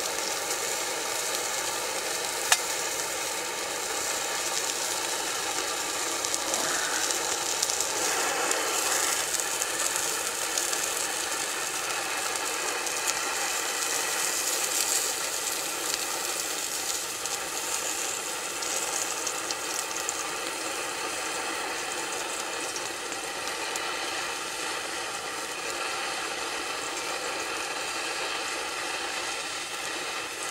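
Sausage sizzling in a frying pan, a steady hiss, with a single sharp click about two and a half seconds in.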